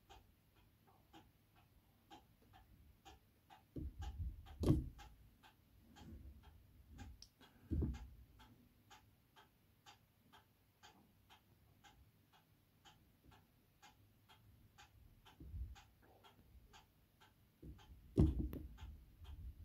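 Faint, steady ticking of a clock, about two ticks a second, with a few soft low thumps about four and eight seconds in.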